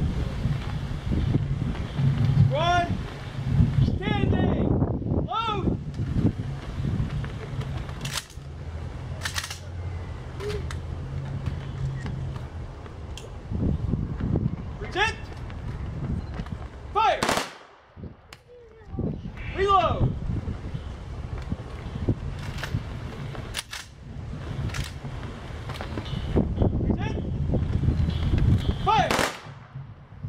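Rifle volleys fired in salute by an honour guard, each sharp crack preceded by shouted drill commands. The two loudest volleys come about two-thirds of the way through and just before the end.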